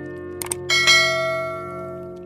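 Subscribe-button animation sound effect: two quick mouse clicks about half a second in, then a bright notification-bell chime that rings and slowly fades.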